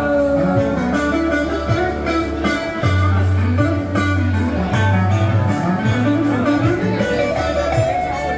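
Electric guitar played live through PA speakers, a picked melodic line over low sustained bass notes.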